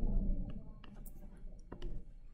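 A digital pen tapping and clicking on a touchscreen while writing by hand: several light, separate clicks.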